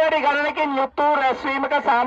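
A man reading an announcement aloud through the horn loudspeakers of a police three-wheeler, his voice thin and radio-like. The speech runs in phrases with a short break about a second in.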